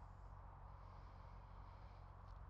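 Near silence: only a faint, steady background hum.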